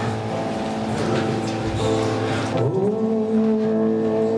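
Worship band music: acoustic guitars and a keyboard holding chords. About two and a half seconds in, a voice slides up into a long held note.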